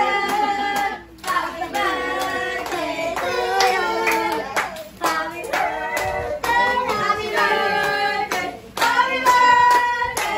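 Voices singing a song together, children's voices among them, with hand clapping.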